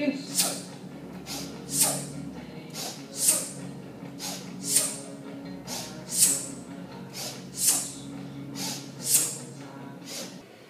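A man's forceful breathing through a set of kettlebell swings: a sharp hissing exhale with each swing, seven of them about a second and a half apart, with a shorter, quieter intake of breath between each pair.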